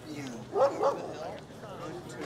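A dog barking twice in quick succession, two short loud barks about half a second in.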